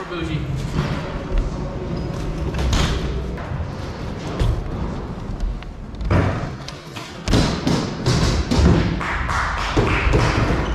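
BMX bike being ridden on a skatepark's concrete floor and box ledge: tyres rolling, pegs grinding along the ledge edge, and several hard knocks and landing thuds in the second half.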